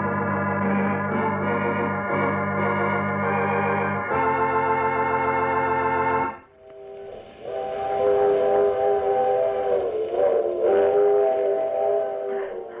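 Organ music: a sustained chord that changes about four seconds in and breaks off a little after six seconds, then a new held chord with a wavering upper line. It is the musical curtain that closes a radio drama's story.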